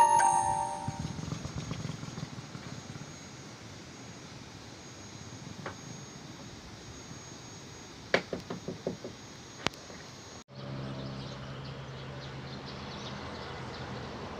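Chime-like notes ringing out and fading in the first second, then steady outdoor background noise with a quick run of knocks and a sharp click at about eight to ten seconds in. An abrupt cut at about ten and a half seconds switches to another outdoor background with a steady low hum.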